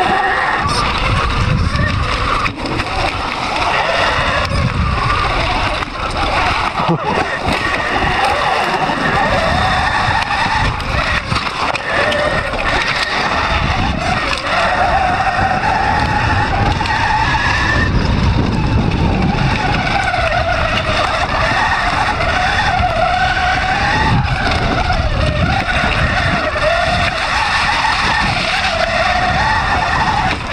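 Motorised off-road bike ridden fast down a rough dirt trail: its motor note rises and falls with speed over a constant rumble of wind and tyres on dirt.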